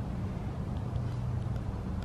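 Steady low background hum with a faint even hiss and no speech.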